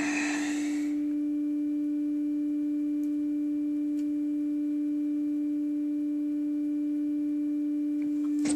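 Steady low-pitched test tone from the Trio 9R-59D receiver's loudspeaker, even in pitch and loudness throughout. It is the modulation tone of a 455 kHz test signal injected into the IF stages, demodulated by the receiver during IF alignment.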